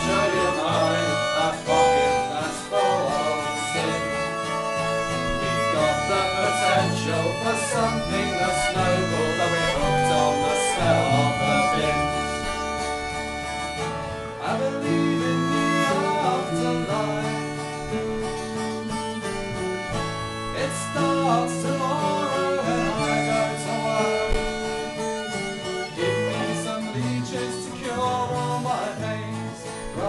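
Acoustic guitar strumming with a violin and bass guitar playing an instrumental passage of a folk song, without vocals.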